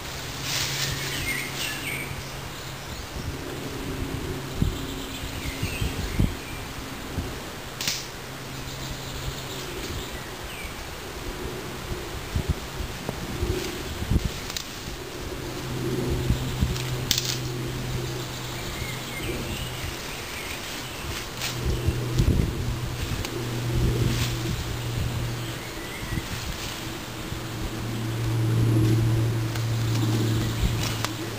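Leafy branches rustling, with sharp cracks of twigs now and then, as someone works on a brush lean-to shelter. Under it runs a low droning hum that swells and fades and is loudest near the end.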